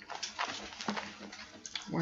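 Thin paper pages rustling and flipping in a run of short scratchy strokes, as Bible pages are turned to a new book. A voice starts near the end.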